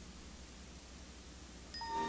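Faint hiss and low hum of a blank gap between two TV commercials on an old videotape recording. Near the end, steady chime-like tones of the next commercial's music come in.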